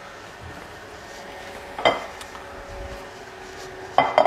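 A ceramic salad bowl being fetched and handled: one sharp clink of crockery about two seconds in, and a knock as the bowl is set down on the countertop at the very end, over a faint steady hum.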